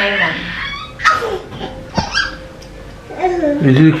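A young child's short, high-pitched whiny vocal sounds, spaced out, with a click about two seconds in; a woman's voice comes in near the end.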